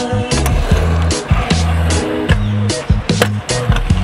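Music with a steady beat and a bass line, over which a stunt scooter's small wheels roll and clatter on concrete.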